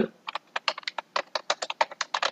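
Computer keyboard typing a quick, even run of keystrokes, about eight a second, as a short phrase is entered into a text field.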